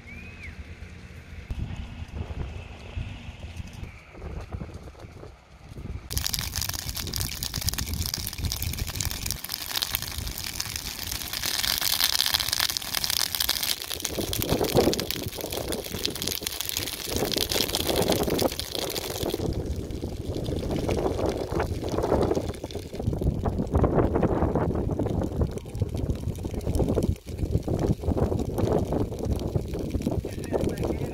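Outdoor sound of a dry grass and brush fire burning, an irregular crackling and hissing noise with wind on the microphone. About six seconds in it jumps abruptly to a louder, hissing roar.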